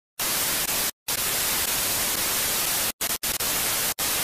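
Television static: a loud, even hiss that starts a moment in and cuts out briefly about a second in and twice around three seconds in.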